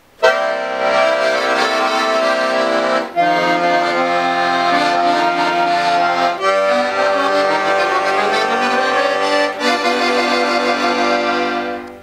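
Piano accordion playing a slow introduction of sustained chords that change about every three seconds, with a rising line in the middle. It starts suddenly just after the beginning and trails off near the end.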